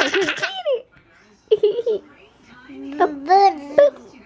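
A toddler laughing and babbling: a sharp, high laugh at the start, a few short syllables, then a longer sing-song call near the end.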